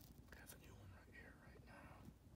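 A person whispering faintly for about a second and a half.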